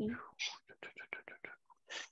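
Faint whispering: a short 'mm', then a quick run of soft, breathy syllables under the breath.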